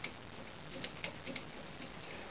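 Small clamps of a Nighthawk bow press frame being tightened down by hand on a compound bow limb: about half a dozen faint, irregular clicks and ticks, the sharpest near the middle.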